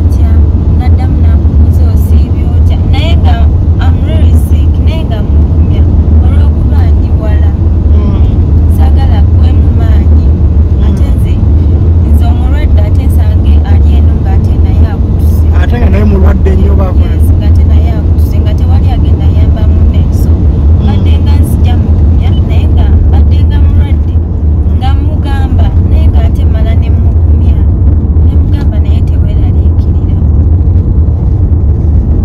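A woman talking inside a car, over a loud, steady low rumble of road and engine noise in the cabin.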